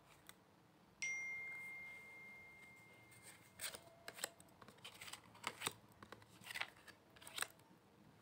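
Tarot cards being handled and dealt from the deck, a run of faint, short card snaps and flicks in the second half. Near the start, one clear bell-like ringing tone sounds suddenly and fades away over about two seconds.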